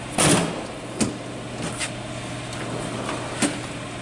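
Steel tool chest drawers being worked: a drawer slides shut with a short rush about a quarter second in, then a sharp clack about a second in and a few lighter clicks, over a steady low hum.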